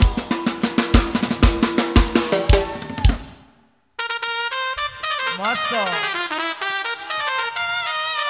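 Live band with horns and drum kit playing, the drums keeping a steady beat. The music fades out to a short silence about halfway through. A horn-led melody then comes in without drums.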